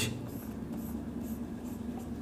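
Felt-tip marker stroking across a whiteboard, about five short strokes in a row, hatching lines into a drawn square.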